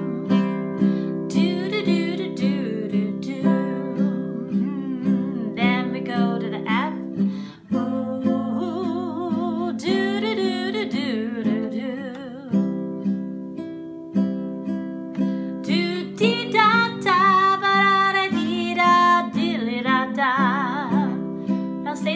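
Nylon-string classical guitar strummed on a steady beat, playing a 12-bar blues on C, F and G chords, with the chord changing every few seconds. A woman's voice sings along over much of it, and there is a brief break in the strumming about eight seconds in.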